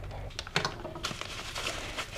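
Plastic bags and foam packing wrap crinkling as a part is unwrapped by hand, with a few sharp clicks about half a second in.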